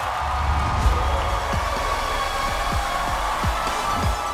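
Studio audience applauding and cheering over the show's music, which has a steady bass drum beat.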